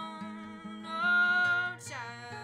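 A woman singing one long held note over fingerpicked nylon-string classical guitar. The note swells louder in the middle and slides away near the end, while the guitar keeps a steady picked pattern.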